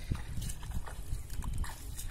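Bare feet wading through shallow, muddy paddy water, a slosh and splash with each uneven step.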